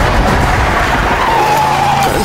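Car driving fast round a bend, engine and tyre noise, with a held tyre squeal in the second half.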